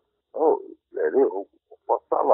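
Speech: a man talking in short phrases, with brief pauses between them.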